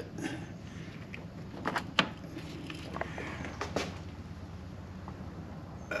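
A few faint clicks and knocks of metal parts being handled at the motorcycle's front sprocket and chain, the sharpest about two seconds in, over a low steady hum.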